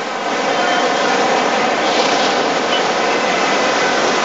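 Sea surf breaking against a seawall, a steady loud rushing noise, mixed with road traffic passing along the seafront.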